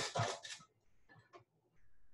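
A couple of faint light clicks, about a second in, as a pot lid is set on the saucepan.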